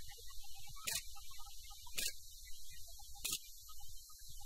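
Steady low hum and high hiss of the space shuttle cabin's background noise, with a sharp click roughly every second.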